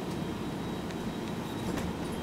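Inside a moving city bus: steady low rumble of the engine and tyres on the road, with a couple of faint rattling clicks.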